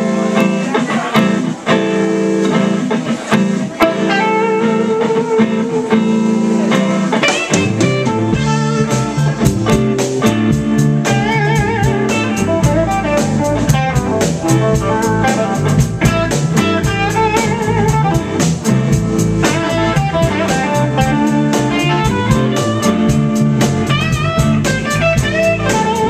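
Live blues band playing an instrumental intro: electric guitars alone at first, then bass and drums come in about seven or eight seconds in with a steady cymbal beat. A lead electric guitar plays bent, wavering notes over the band.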